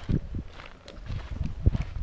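Footsteps on a dirt trail: irregular soft thumps.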